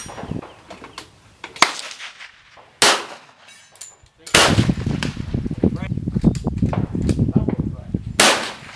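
Pistol shots on an open range: two sharp cracks about a second apart, then a third about four seconds in. After the third shot a heavy rumble of wind buffeting the microphone takes over.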